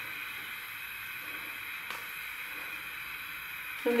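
Steady low hiss with no clear events, broken only by one faint tick about two seconds in.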